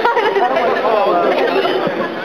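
Close-by chatter of several people talking over one another, with laughter at the start.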